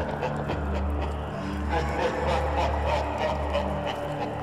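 Sound effects in a heavy metal track's spoken intro: a low sustained drone with an animal's heavy breathing over it, about three breaths a second.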